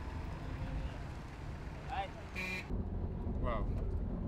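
Outdoor background noise: a steady low rumble with a few brief distant voices. The sound changes abruptly about two and a half seconds in.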